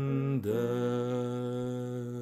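A single voice sings the closing words of a Swedish hymn unaccompanied. It breaks off briefly about half a second in, then holds one long final note.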